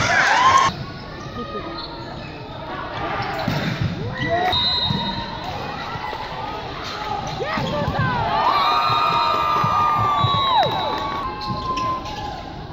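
Crowd cheering in a sports hall, cut off less than a second in. Then a volleyball rally: sneakers squeaking on the court floor, with thuds of the ball being played and players' voices, a long squeak about nine seconds in.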